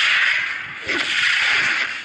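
Whooshing sound effects accompanying an animated film title card: two loud, hissing swooshes, the second one surging in about a second in with a falling sweep.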